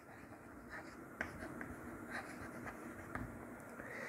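Chalk writing on a blackboard: faint, short scratching strokes and taps as a word is written out.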